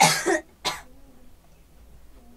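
A person coughing twice in a small room: a harsh burst followed by a shorter second cough about half a second later.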